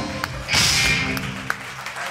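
Live rock band's closing hit: one sudden loud crash of drums, cymbals and electric guitars about half a second in, then left ringing and fading out as the song ends.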